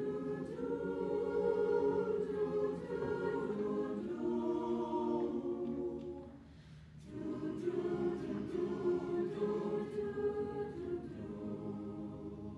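Mixed-voice school choir singing, dropping away briefly about six seconds in before the voices come back in together.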